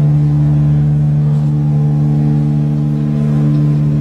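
Live electric guitar and bass holding one loud, steady low drone of sustained notes, with no drum hits.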